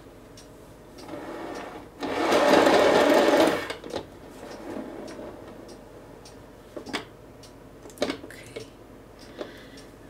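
A painting turntable spinning under a canvas: a whirring rattle of its bearings builds about a second in, is loud for about a second and a half, then dies away. Light taps follow as hands handle the canvas.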